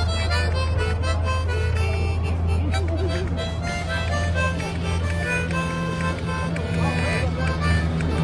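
A harmonica played live, a tune in held chords, over a steady low hum.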